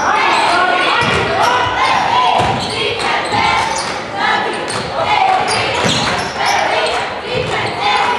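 Basketball bouncing on a gymnasium hardwood court during a game, as repeated short thuds, with people's voices talking throughout.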